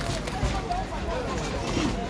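People talking in the background, with no clear words, over a steady low outdoor rumble.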